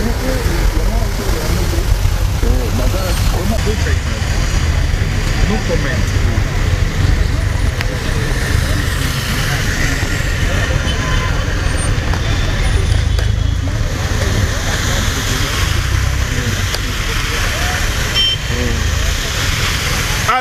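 A vehicle driving through a flooded street, its wheels pushing through the water, with a steady low rumble and a constant splashing hiss; indistinct voices talk underneath.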